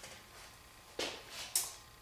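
Faint handling sounds of a dry-erase marker and felt eraser at a whiteboard: two short, hissy scrapes, about a second in and half a second later.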